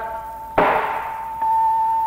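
A single sharp metallic strike about half a second in, ringing away afterwards, of the kind a wayang golek puppeteer makes on the kecrek plates hung on the puppet chest to cue the gamelan. Under it a long held musical note runs on, growing louder after about a second and a half.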